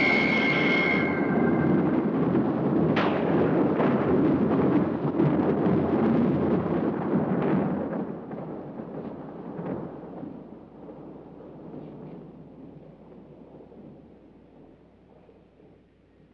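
A loud, crackling rumble that holds steady for about eight seconds and then slowly dies away, as a high organ note fades out in the first second.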